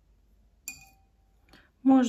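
A single short clink of a paintbrush knocking against a gouache paint jar, with a brief ringing after it.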